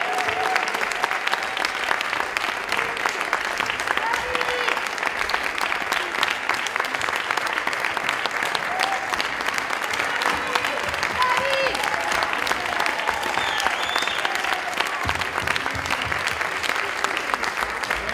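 Concert audience applauding steadily at the end of a song, the clapping dense and even throughout.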